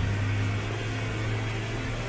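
Snowmobile engine running with a steady low hum as the sled drives off across snow, growing slightly fainter.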